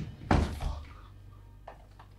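A door slamming shut: one loud, heavy thud about a third of a second in, a smaller knock right after it, then a fading tail.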